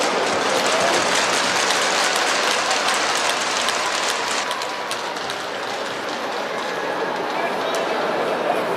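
Crowd noise in an ice arena: a steady, echoing wash of many voices talking at once, with no single voice standing out.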